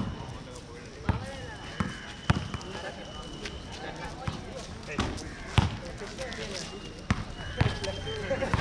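A basketball bouncing on a hard court, with about eight sharp bounces at irregular intervals.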